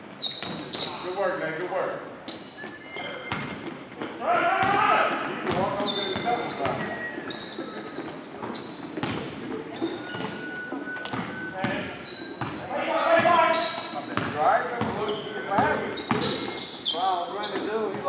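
Basketball game in an echoing gym: the ball bouncing on the hardwood floor in repeated sharp knocks, with players shouting on the court.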